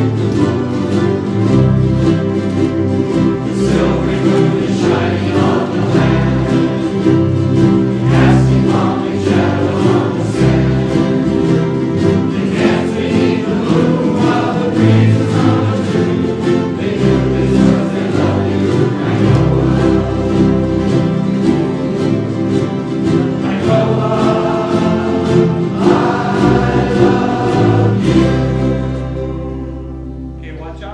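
A large ukulele group strumming chords together in a steady rhythm while singing in unison. Near the end the song stops and the last chord dies away.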